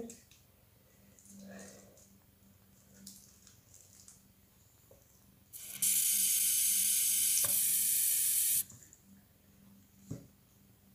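A loud, steady hiss that starts suddenly about six seconds in and cuts off abruptly about three seconds later, with soft handling rustles before it.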